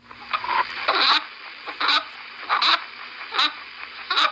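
Another rabbit's sounds played back as a recording: a run of short bursts, about one every three-quarters of a second, starting abruptly.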